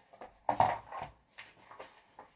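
Pages of a hardcover picture book being turned and the book handled on a wooden table. The loudest moment is a knock with paper rustle about half a second in, followed by lighter rustles and ticks.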